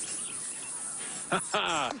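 A tambourine shaken steadily, its jingles making an even rattling hiss for about a second and a half. A voice with a falling pitch comes in near the end.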